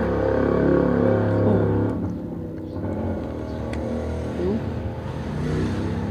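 A motor vehicle's engine running nearby, loudest in the first two seconds, its pitch sliding up and down a few times.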